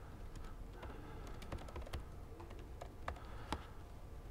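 Typing on a laptop keyboard: scattered, irregular key clicks, a few of them sharper.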